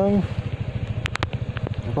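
Yamaha NMAX scooter's single-cylinder engine running steadily on the move, a fast low pulsing, with a few sharp clicks about a second in.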